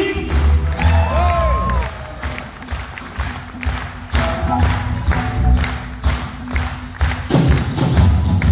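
Rock band playing live on stage, with bass, drums and a lead line that bends up and down about a second in, and the audience cheering.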